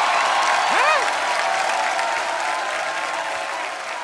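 Studio audience applauding, slowly dying down, with one rising-and-falling shout about a second in.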